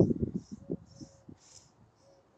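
Blue painter's masking tape being peeled slowly off freshly painted car bodywork: an irregular crackling that is strongest at first and dies away about halfway through.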